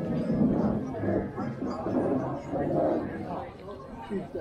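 Indistinct chatter of people talking among pedestrians and people seated at café terraces, several voices with no words standing out.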